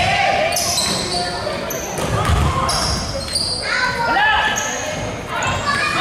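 Basketball play on an indoor court: sneakers squeaking on the floor in many short, high squeaks, with a ball bouncing in low thuds, echoing in a large gym.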